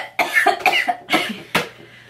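A young woman laughing in several short, breathy bursts.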